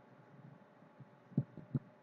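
Faint steady hiss, then three short, dull, low thumps in quick succession about a second and a half in.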